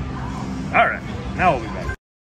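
Steady slot-machine and casino background din with two short pitched yelps, the first a little under a second in and the second about half a second later. The sound cuts off abruptly just before the end.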